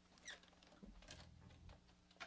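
Faint clicks and rustles of a semi-hollow electric guitar being handled as its strap is lifted off, over a low steady hum.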